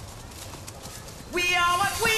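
A horse's hooves stepping at a walk on a leaf-covered path, faint under low background noise. About a second and a half in, a song with singing and backing music starts suddenly and much louder, and becomes the loudest sound.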